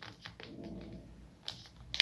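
Faint crinkling and creasing of a thick wad of good-quality paper, already folded five times, being pressed in half again by hand: scattered small ticks and a soft rustle in the first second, then one sharper tick.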